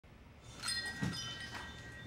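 Shop door chime ringing as the door opens: about three metallic strikes in quick succession, their high tones lingering and fading.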